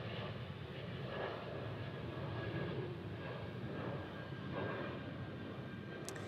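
Twin-engine Breeze Airways jet airliner climbing out after takeoff, its engines a steady low rumble.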